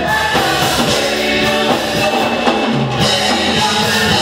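Gospel vocal group singing live in harmony, a man's voice singing lead, with instrumental backing.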